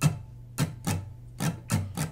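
Steel-string acoustic guitar strummed with the fretting hand laid across the strings to mute them: about six dry, percussive chucks in a down, down-up, up-down-up strum pattern, with no ringing chord.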